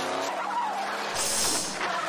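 Racing cars on a film soundtrack: engines running with tyres skidding on the track, and a sharp hiss about a second in.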